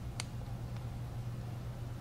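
A steady low hum with one small sharp click a moment in, as the opened phone and its plastic frame are handled.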